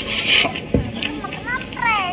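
Close-up mouth sounds of someone eating with his fingers: chewing and lip smacking in short bursts. Near the end there is a brief high squeal that rises and then falls.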